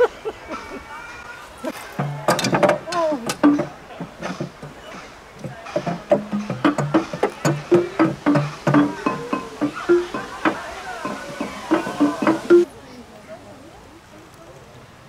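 Large wooden xylophone with long wooden bars struck with mallets: an irregular run of short, low wooden notes, many strikes in quick succession, starting about two seconds in and stopping suddenly near the end.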